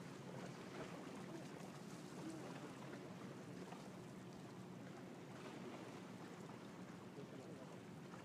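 Faint, steady outdoor background: a low rumble with a light hiss over it, with no distinct events.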